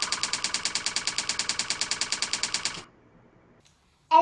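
Typing sound effect: a rapid, even run of key clicks, about eleven a second, that keeps time with a title being typed on letter by letter, then stops abruptly about three seconds in.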